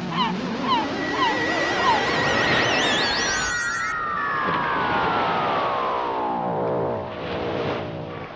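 Electronic flying-saucer sound effect: warbling tones climb in pitch for about four seconds, then a long swoop falls steadily in pitch and fades near the end.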